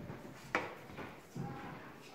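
A single sharp knock about half a second in, with a few fainter knocks and low classroom background after it.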